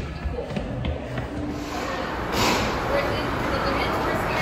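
Background chatter of a crowd of people in a large indoor hall, a hum of overlapping voices with no single clear speaker, swelling a little louder about two seconds in.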